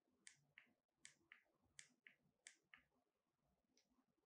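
Faint clicks from the control panel of a Godox SL60W LED video light as it is being set: four pairs, each a higher click then a lower one about a third of a second later, and one last click near the end.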